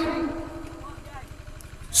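A pause in a man's amplified sermon: his last word's echo fades over about half a second, leaving a faint low rumble of background noise.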